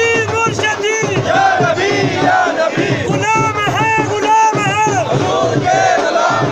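A crowd of men shouting and chanting loudly, many voices overlapping in rising-and-falling calls.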